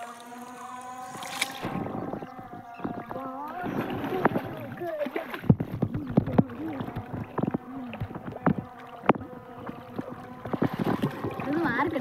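Shallow river water splashing and sloshing around people wading and swimming in it, with many irregular splashes through the second half. Voices come and go.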